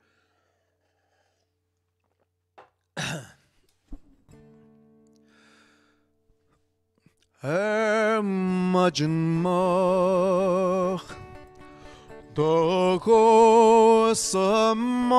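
A breath, then one acoustic guitar chord struck and left to ring out and fade. A few seconds later a man begins singing a slow song in Irish Gaelic, with long held notes and vibrato and a short pause before the next phrase.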